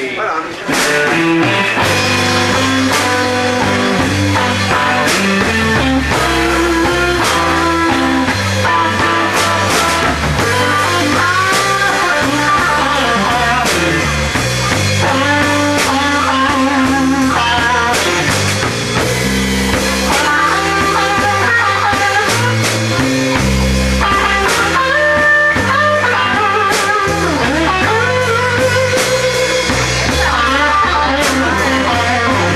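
Live blues-rock trio playing an instrumental passage: lead electric guitar with bending notes over electric bass and drum kit. The band comes in about a second in, right after a count-in.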